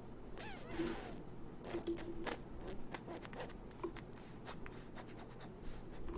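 Faint, irregular light clicks and scratchy ticks of a computer mouse being clicked and its scroll wheel turned, with a brief rustle just under a second in.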